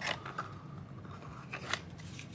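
Bar of soap being slid back into its small paperboard box as the box is handled: light cardboard scraping and rustling with a few short clicks, two of them near the end.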